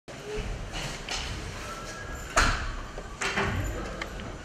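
Scattered knocks and bumps of people moving about a press-conference table, the loudest a sharp knock about two and a half seconds in, with another cluster of knocks shortly before the end.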